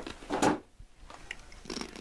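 Handling noises: a short rustle about half a second in, then a lull, then scattered light clicks and rustling near the end.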